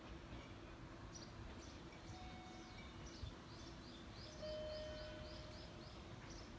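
Faint outdoor ambience with small birds chirping, a quick run of chirps in the second half, over a low steady hum. A steady tone sounds for about a second and a half near the end.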